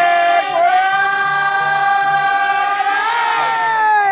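Kiyari, the Japanese festival work chant sung before a mikoshi is lifted: one voice holding a single long, drawn-out note, stepping slightly higher about three seconds in.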